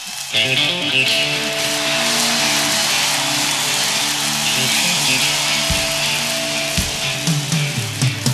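Live rock band with electric guitars, recorded from the audience, coming in loudly about a third of a second in over crowd noise and playing on steadily.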